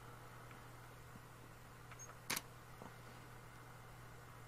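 Faint steady hum with a single short click a little past halfway, a camera shutter firing during a macro focus-stacking sequence.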